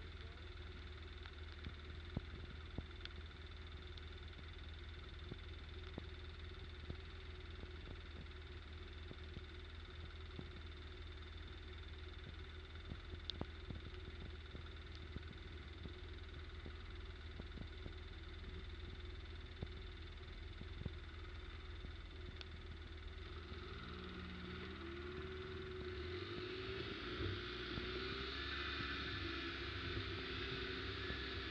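ATV engine idling steadily while stopped, with scattered faint ticks. About three-quarters of the way through, the engine picks up and climbs in pitch in steps as it pulls away, getting a little louder.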